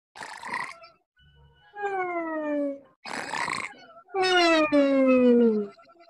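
Cartoon snoring sound effect, heard twice: each cycle is a rasping snore followed by a long falling whistle.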